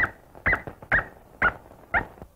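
Cartoon dog yipping: five short, high yips, about two a second, each with a quick rise and fall in pitch.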